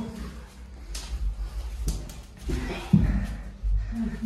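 Shuffling and scuffing of a person squeezing through a narrow stone passage, with low rumbling handling noise that grows louder in the second half and a few soft knocks. A voice is heard briefly near the end.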